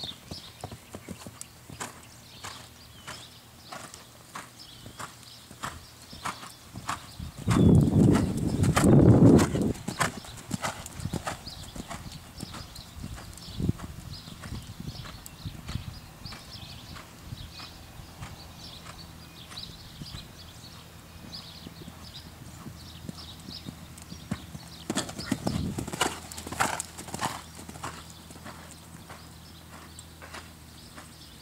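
Horse's hooves cantering on a sand arena: a steady run of soft hoofbeats. About eight seconds in, a loud low rush lasts a couple of seconds, with a shorter, weaker one near the end.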